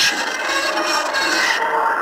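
A steady, scratchy rasping noise on a caller's phone voice message, in a pause between his words, about as loud as his speech.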